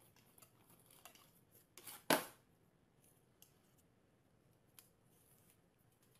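Dog pawing and nosing at a cardboard box on a glass tabletop: faint scratching and scraping, with one sharp knock about two seconds in.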